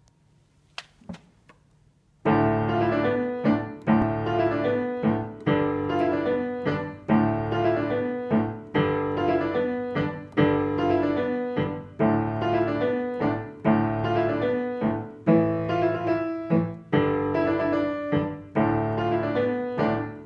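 A piano plays a short, simple teaching piece. After a couple of faint clicks, it begins about two seconds in with evenly spaced notes in a repeating pattern. The left hand moves one interval around to different positions while the right hand repeats two figures.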